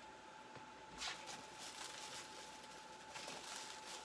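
Faint rustling and light knocks of cardboard and foam packing being handled, with one slightly louder scrape about a second in. A faint steady high tone sits underneath.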